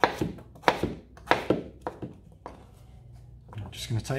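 Kitchen knife chopping a raw potato into chunks on a cutting board: about six sharp knocks at uneven intervals over the first two and a half seconds, then a pause.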